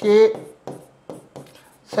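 Pen writing on an interactive display screen: a handful of short, separate taps and scrapes as a word is written, following one spoken syllable at the start.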